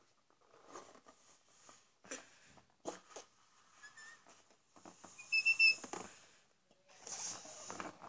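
Breaths blown into an orange latex balloon nested inside a second balloon as it inflates: short soft puffs, with a brief high rubber squeak about five seconds in and a longer breathy blow near the end.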